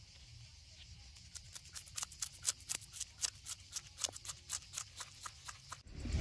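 Knife scraping the scales off a fresh whole fish: a rapid run of short, scratchy strokes, several a second, growing louder after the first second.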